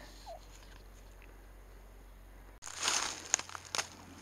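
Faint outdoor background at first, then footsteps crunching and rustling through dry fallen bamboo leaves on the forest floor, loudest about three seconds in, with a few sharp snaps after.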